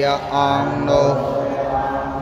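Buddhist monks chanting together, a continuous recitation on long held notes.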